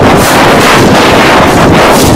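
Harsh, heavily distorted noise at nearly full level, smeared across the whole range with no clear tone, holding steady without a break: overdriven audio from a video-editing effect.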